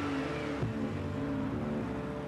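A car engine running steadily as the car drives, an even hum.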